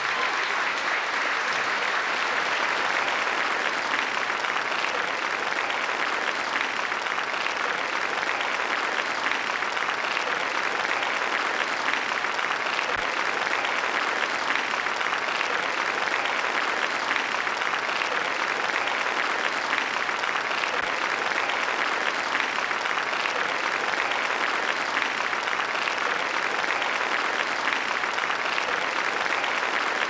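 Audience applauding steadily and unbroken.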